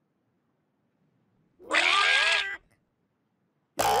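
Cartoon chick characters giving a squeaky, meow-like call about one and a half seconds in, lasting about a second, with pitch sliding up and down. Another sound with a rising pitch starts just before the end.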